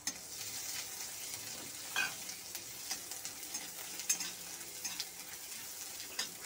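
Ginger paste frying in ghee in a steel wok, sizzling steadily while a metal spatula stirs and scrapes the pan. A few sharper scrapes stand out, the loudest about two and four seconds in.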